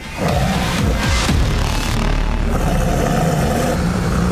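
Dramatic suspense music with a loud, low rumbling sound effect that comes in suddenly about a quarter second in and holds steady.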